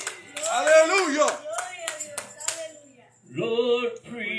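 Hand clapping, a few sharp claps each second, under a voice calling out, dying away about two and a half seconds in. After a brief hush, a voice starts a held, sung-sounding note in the last second.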